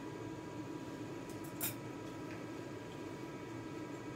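Steady mechanical hum with faint steady tones, with a single sharp click about one and a half seconds in and a few faint ticks just before it, during grooming work around a poodle's eye.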